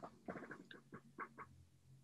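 Near silence: quiet room tone with a few faint, brief sounds in the first second and a half.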